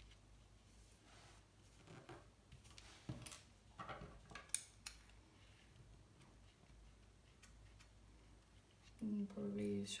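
Quiet handling of a paper zine and its binding thread by hand: a few soft rustles and light ticks between about two and five seconds in, as the loose thread ends are tucked under a stitch.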